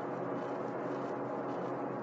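Steady low-level hiss and faint hum: the background noise of the voice recording, with no other sound.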